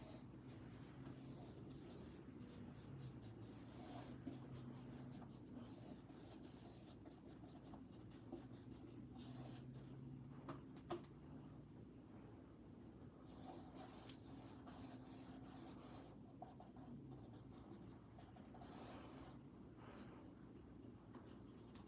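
Faint scratchy strokes of a paintbrush dragging thick acrylic paint across a canvas, coming in irregular runs, with a couple of light clicks of the brush against the plastic palette.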